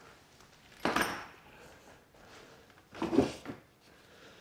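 Handling noises while unpacking parts from a cardboard box: a single knock about a second in as something is set down, then a brief clatter about three seconds in as a bent metal tube handle is lifted out of moulded pulp packing.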